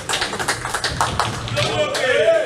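A quick run of sharp taps and knocks in a ninepin bowling hall, ball and pin clatter mixed with what may be hand claps, followed near the end by raised voices.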